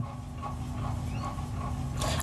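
Low steady background hum and room noise, with a faint constant tone and a low rumble underneath.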